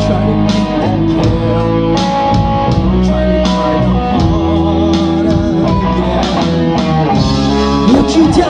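Live rock band playing, with electric guitars over a steady drumbeat.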